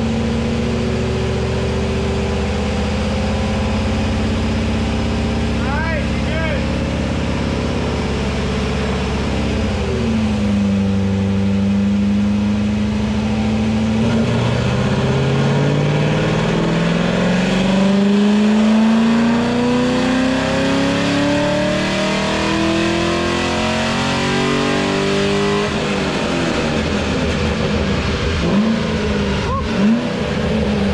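C6 Corvette V8 running on a chassis dyno, held at a steady speed at first, then making a full-throttle dyno pull: the engine note climbs steadily in pitch for about twelve seconds from midway, then drops off a few seconds before the end.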